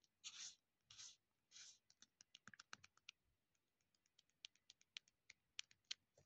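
Faint handling sounds of plastic skincare bottles in a clear storage box: a few soft scratching strokes in the first two seconds, then a quick run of light clicks, and a few scattered single clicks near the end.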